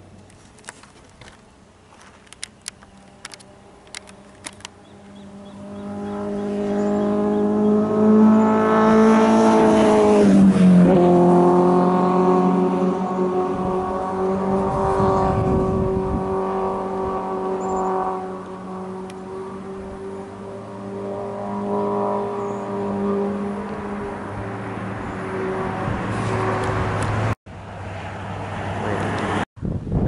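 A motor vehicle passing along the road: its engine grows louder from about five seconds in, its pitch drops sharply as it goes by around ten seconds in, and then a steady engine drone carries on until it cuts off abruptly near the end.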